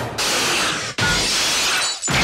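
Glass shattering in two loud crashes about a second apart, each cut off sharply.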